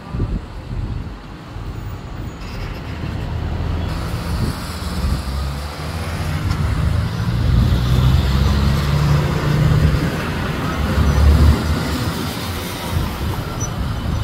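Outdoor city street noise: a loud, uneven low rumble of traffic mixed with wind on the microphone, swelling several times.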